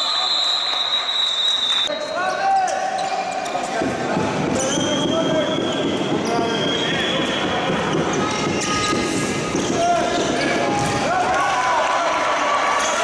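Handball game noise in a reverberant sports hall. A referee's whistle is blown in one long blast for the first two seconds, then the ball bounces on the court floor, mixed with footsteps and the shouts of players and spectators.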